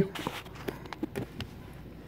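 A person chewing a mint chocolate chunk protein bar: a few faint, irregular mouth clicks over a low steady hum.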